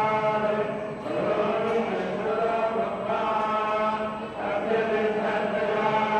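Vedic mantras chanted by priests in unison, a steady, unbroken recitation with brief dips for breath.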